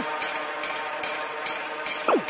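Electronic hard trance music: a fast run of bright percussive ticks about four a second over sustained synth layers, with a quick downward-sweeping synth zap at the start and no bass drum.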